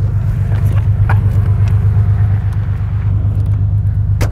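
The air-cooled flat-six of a 1986 Porsche 911 Carrera running steadily with a low, even rumble, heard from inside the car.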